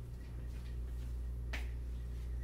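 A single sharp click about one and a half seconds in, over a steady low hum.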